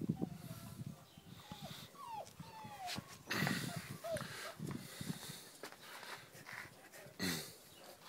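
Dogue de Bordeaux x Neapolitan mastiff puppy whimpering in short, high, mostly falling whines while being handled, with a louder rustling burst about three and a half seconds in and another near the end.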